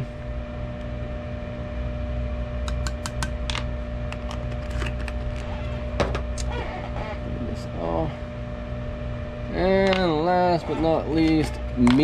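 Steady hum of an electric fan, with a few quick light clicks and taps about three seconds in and another around six seconds: a measuring scoop against a jar of gold flake as flake is spooned into the plastic.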